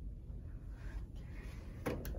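Low steady room rumble, then a single short click near the end as the elevator's up hall call button is pressed.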